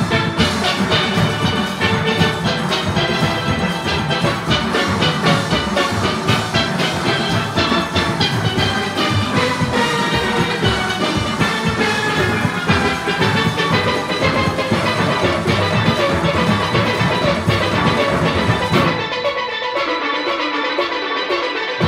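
A full steel orchestra playing: tenor and bass steel pans struck with sticks in a dense, fast-moving arrangement over percussion. About a second before the end the sound thins as the highest and lowest parts drop away.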